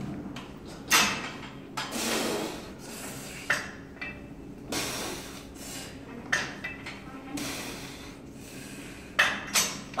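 Steel weight-stack plates of a bench-press machine clanking as the stack is pushed up and let back down, about six sharp clanks at irregular spacing, two close together near the end, with noisy rushes between them.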